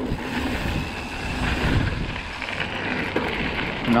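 Mountain bike rolling at speed down a dirt trail and onto a gravel road: rumble of the tyres over the ground, with wind buffeting the microphone.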